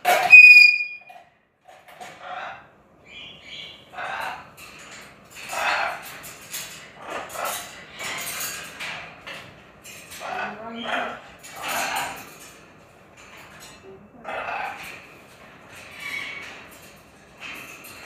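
Blue-and-gold macaw calling: a loud, piercing whistle at the very start, then a run of short, harsh squawks and chattering calls about once a second.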